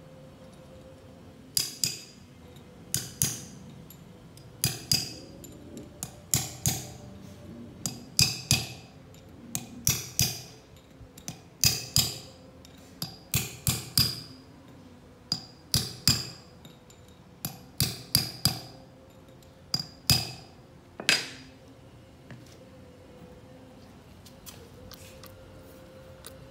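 Steel hammer striking steel in twos and threes of sharp, ringing blows, roughly every second and a half, stopping about 21 seconds in. It is driving a tapered roller bearing down onto the shaft of a Sumitomo S280F2 excavator swing motor by hand, in place of a press.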